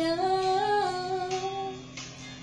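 A woman humming the melody wordlessly in a few long held notes that step up and down, fading near the end. Her voice echoes off the hard walls of a small bathroom.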